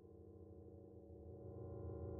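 Faint low drone of several steady held tones, fading in from silence and slowly swelling louder: the opening of a dark ambient background music track.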